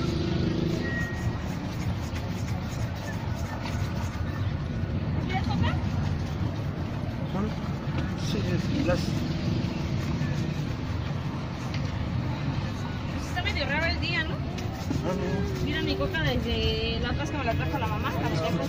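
Bristle shoe brush scrubbing back and forth over leather shoes, against street traffic noise, with a voice in the background near the end.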